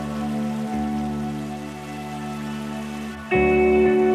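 Soft background music of sustained, held chords; a louder new chord comes in near the end.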